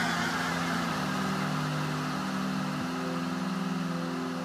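House music track in a breakdown: sustained low synth chords that shift twice, under a steady hiss, with no beat or vocal.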